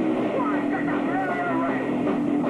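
Punk band playing live: distorted guitar holding a steady chord with shouted vocals over it.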